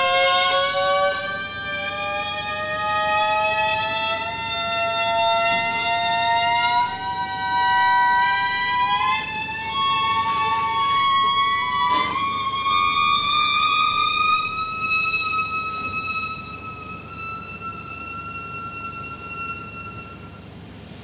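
Solo violin playing long bowed notes that glide slowly and steadily upward in pitch over many seconds, growing quieter over the last few seconds.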